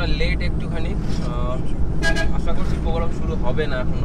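A car's engine and road noise heard from inside the cabin, a steady low rumble, with people talking over it.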